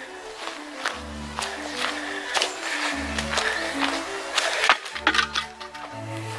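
Background music with a slow stepping melody over bass notes that change about every two seconds, with a few short clicks or crunches on top.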